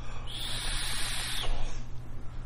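Airy hiss of a draw being pulled through a rebuildable vape tank, lasting about a second.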